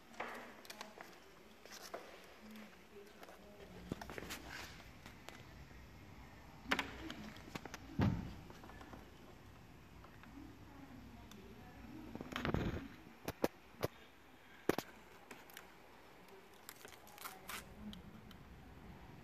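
Handling sounds of vinyl wrap film being worked and trimmed by hand along car trim: scattered light clicks, taps and rustles, with a few louder knocks around the middle and a quick run of sharp clicks shortly after.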